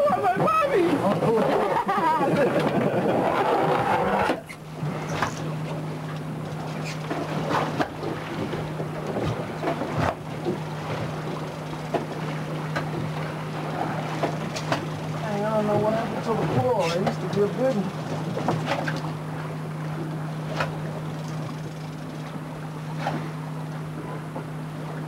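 Laughter and voices for the first few seconds, then, after a sudden drop, a steady low drone from the fishing boat's idling engine, with scattered sharp clicks and knocks and faint voices now and then.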